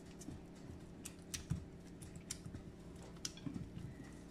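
Faint scraping of a wooden spatula working thick batter off the sides of a glass mixing bowl, with a few light ticks against the glass.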